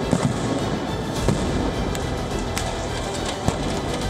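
Several sharp, irregularly spaced bangs, like blasts in a street clash, over a bed of dramatic background music; the loudest bang comes a little over a second in.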